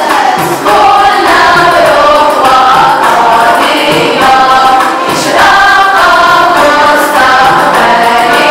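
A choir singing a song to music, the melody moving in steps from note to note.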